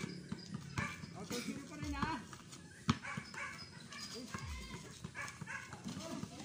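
People's voices calling out across an open court, with a single sharp knock about halfway through.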